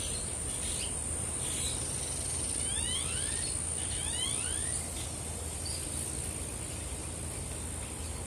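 Outdoor ambience: an insect trilling steadily at a high pitch, with a bird's short rising chirps twice in the middle, over a low background rumble.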